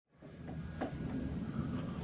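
Quiet room noise with a low rumble and a couple of faint clicks.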